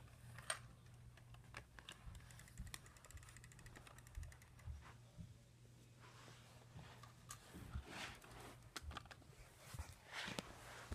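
Near silence with scattered faint clicks and taps of handling, over a low steady hum.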